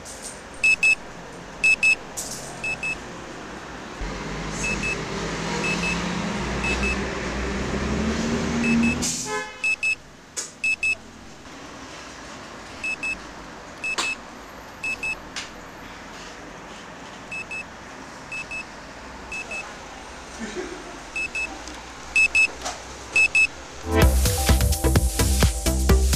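Digital alarm clock beeping in short high double beeps, repeating on and off. A swelling rumble that rises in pitch builds over several seconds and cuts off suddenly about nine seconds in.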